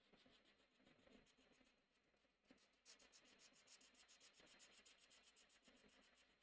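Faint scratching of a marker tip on sketchbook paper in short back-and-forth coloring strokes, pausing briefly and then running on quickly at about five or six strokes a second from about three seconds in.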